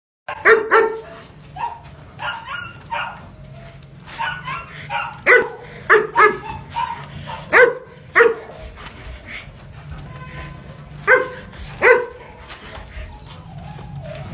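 Long-coated German Shepherd barking repeatedly in short, loud clusters of sharp barks. The barking stops for about three seconds, then two last barks come about two seconds before the end.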